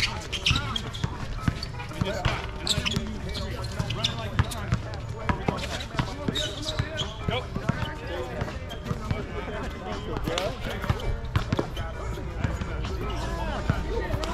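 A basketball bouncing on an outdoor court, with short sharp knocks scattered throughout, and players' voices calling out in the background.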